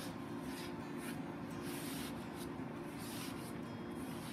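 Dry Norwex EnviroCloth microfibre cloth rubbed in short strokes along a painted windowsill, a series of soft, irregular swishes, over a steady low hum.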